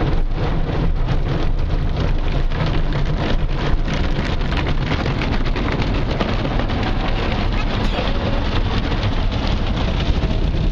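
Soft-cloth washer strips and water spray of a drive-through friction car wash scrubbing and slapping against the car, heard from inside the cabin: a steady rain-like rush with many quick irregular slaps and a low rumble.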